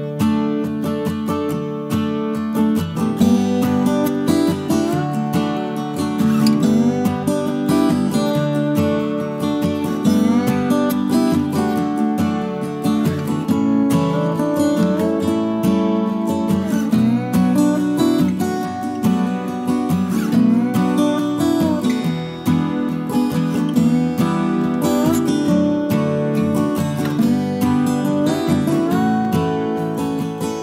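Background music led by strummed acoustic guitar, playing steadily throughout.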